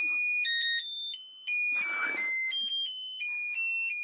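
A simple electronic tune of single pure beeping notes, hopping between a few pitches one at a time, with a short hiss about two seconds in.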